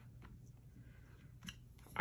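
Faint paper-handling sounds as a sheet of cardstock is lifted off a silicone stamping mat, with a few light clicks, the clearest about one and a half seconds in.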